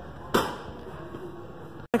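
A single sharp click with a short noisy tail from the handheld Baofeng 888S walkie-talkie about a third of a second in, over a steady low hiss.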